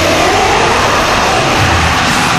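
Norwegian thrash metal demo recording: a dense wash of distorted guitar with a pitch sliding upward in the first second, which gives it an engine-like rev.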